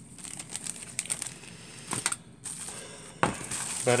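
Clear plastic packaging wrap crinkling and rustling as it is handled and pushed aside, with a couple of sharper crackles or knocks, one a little before the halfway point and one near the end.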